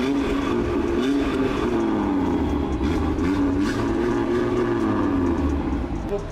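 Audi RS3's turbocharged five-cylinder engine being revved in place, its exhaust note rising and falling several times in a row. The sound echoes in an underground car park.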